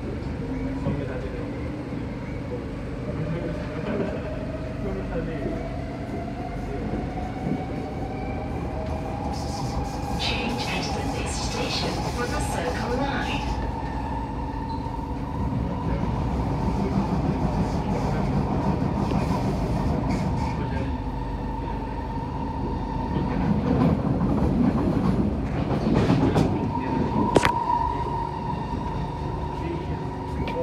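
Kawasaki-built C151A metro train pulling away and accelerating, heard from inside the carriage: the traction motor whine rises in pitch over the first ten seconds, then holds steady over the wheel and track rumble. Bursts of sharp clicks come around ten to thirteen seconds in, and a louder rattle follows near the end as the wheels run over the rail.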